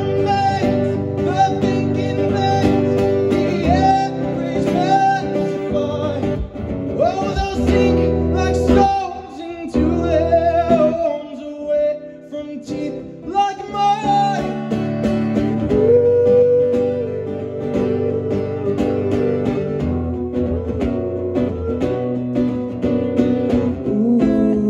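Live acoustic guitar accompanying a lead voice singing, with long held, sliding vocal notes over steady strummed chords.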